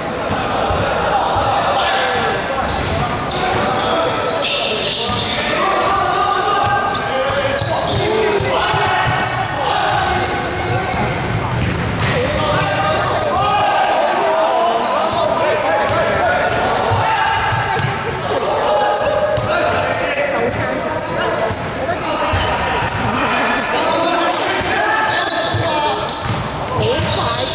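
Basketball bouncing on a wooden gym floor during play, with players' and onlookers' voices calling out throughout, echoing in a large sports hall.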